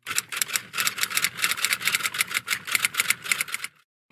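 Typewriter keys clacking in a rapid run, about seven strikes a second, as a sound effect for the typed-out title. The run stops abruptly shortly before the end.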